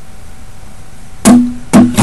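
Acoustic guitar: after a second or so of quiet hiss, two strummed chords about half a second apart, ringing on, as the song starts.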